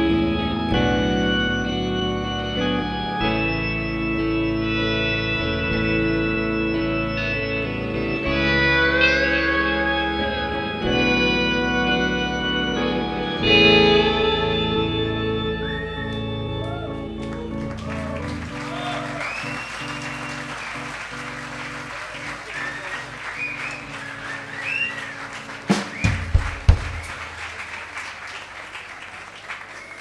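A live band's closing chords: sustained organ-like keyboard chords over bass, slowly fading. About 18 seconds in, the audience applauds, cheers and whistles, with a few low thumps near the end.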